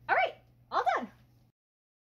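Two short, high yips, like a small dog, about half a second apart, each rising and falling in pitch; the sound then cuts off abruptly.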